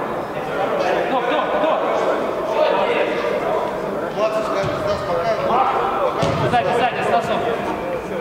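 Players' indistinct shouts and calls echoing in a large indoor sports hall, with a few sharp thuds of a football being kicked.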